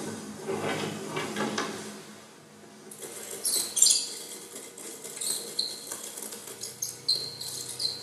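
Experimental sound performance: a wavering, voice-like sound for the first two seconds, then high squeaks and scraping with small scattered clicks.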